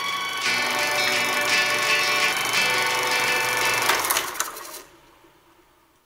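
Closing music of a film playing over the end card, then dying away to near silence near the end.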